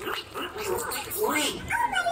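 A cartoon character's recorded voice played over the show's loudspeakers: high-pitched, yelping vocal sounds whose pitch slides up and down.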